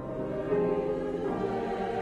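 Choir singing a hymn in long held notes, swelling louder about half a second in.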